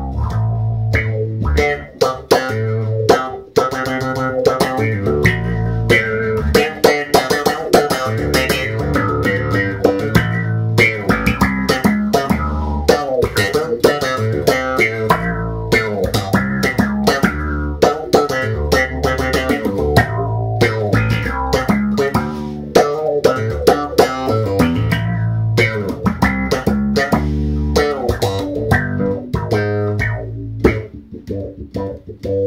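Electric bass played through a Musitronics Mu-Tron III envelope filter in low-pass mode, a steady stream of quick plucked notes. Each note's tone opens and closes with how hard it is picked.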